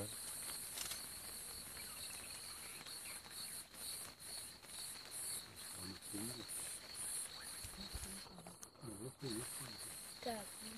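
Night insects, crickets, calling in the bush: a steady high trill, joined about three seconds in by a higher chirp pulsing about three times a second.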